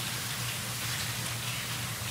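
Steady even hiss of room noise picked up by the courtroom microphones, with no distinct events.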